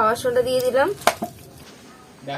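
A person's voice speaking briefly, then a single sharp tap a little after one second in.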